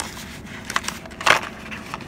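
A small cardboard cosmetics box being opened by hand, its end flap pulled and the inner tray slid out: short papery scrapes, the louder one just past halfway.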